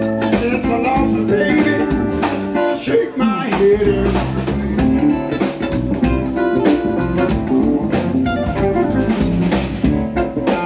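Live blues band playing an instrumental passage: electric guitars, electric bass, drum kit and keyboard together.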